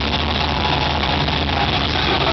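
Punk rock band playing live at high volume, heard from within the audience as a dense, smeared wash with a steady low drone underneath.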